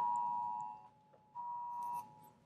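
A phone sounds the Wireless Emergency Alert attention signal, two steady tones sounded together, announcing a Presidential Alert test message. The tone stops a little under a second in and comes back about half a second later.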